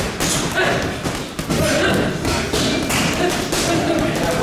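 Boxing gloves punching a hanging heavy bag, a quick run of thuds at about two to three blows a second.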